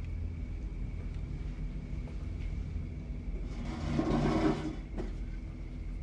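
Film soundtrack of a tense scene: a low, steady rumbling drone with a faint high tone above it, and a brief louder noise, like a scrape or rustle, at about four seconds.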